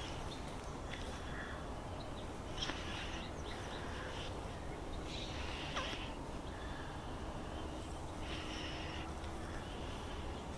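Quiet outdoor background: a steady low rumble with a few faint, short, scattered sounds at irregular moments.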